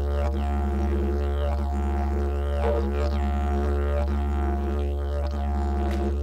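A didgeridoo playing a continuous low drone as background music, its overtones sweeping in a repeating pattern about once a second.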